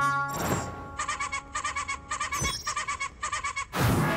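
Cartoon soundtrack: music with a rapidly stuttering, bleat-like sound effect that repeats in short bursts about twice a second, and a few sudden thuds or swishes near the start and end.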